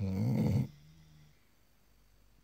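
Sleeping pit bull snoring: one loud snore of under a second, trailing off into a fainter drawn-out tone that fades by about a second and a half in.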